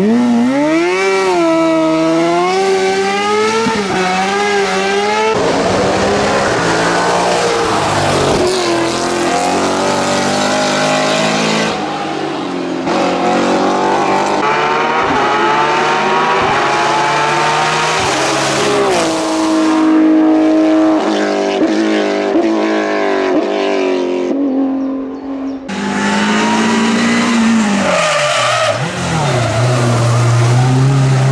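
Racing car engines revving hard through the gears, their pitch climbing and dropping again and again, one car after another. The sound changes abruptly several times, with a short dip a little before the end.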